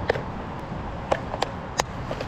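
A few sharp plastic clicks and rattles from a clear plastic tackle box being handled, over a steady rush of wind and moving river water.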